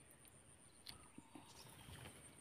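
Near silence: faint outdoor background with a few small, faint clicks.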